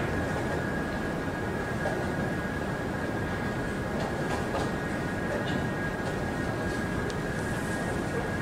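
Steady hall noise with a constant high-pitched whine, and a few faint clicks from chess pieces and clock presses in a blitz game.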